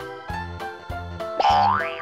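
Upbeat children's background music with a steady beat. About one and a half seconds in, a loud cartoon sound effect sweeps up in pitch over half a second as the surprise ball is opened.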